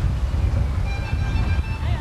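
Outdoor street ambience: a steady low rumble of traffic and wind on the microphone, with a brief faint high tone about halfway through.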